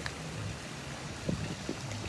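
Steady low hiss of water and wind around a small inflatable boat, with two faint soft knocks late on.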